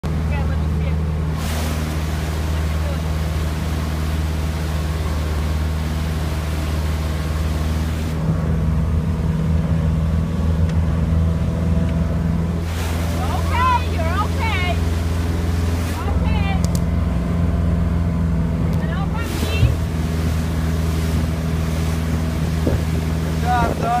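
Motorboat engine running at a steady speed while towing a water skier, a constant low drone with rushing wind and water noise over it at times.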